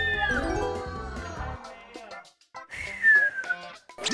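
Background music with cartoon-style sound effects: falling, whistle-like glides near the start. The music drops out briefly past the midpoint, then a long falling tone comes in.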